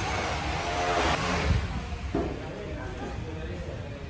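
An indistinct voice in the first second and a half over a steady low background rumble, which then carries on alone, somewhat quieter.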